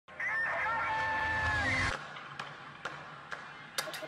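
Opening of a channel's intro jingle: a held, pitched sound for under two seconds that slides at its start and end, then a few single clicks about half a second apart, leading into a busy beat near the end.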